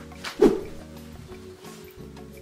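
Background music with held tones, and one short, loud sound that drops in pitch about half a second in.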